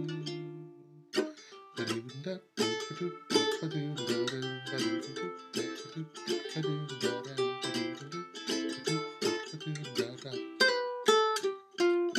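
Ukulele plucked by hand: a chord rings and fades, then after a short pause a run of picked notes and chords.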